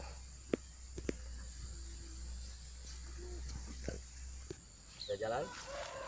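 Quiet outdoor ambience with a few light, sharp knocks from shovels and hoes working a pile of soil and cocopeat mix, and a faint voice near the end.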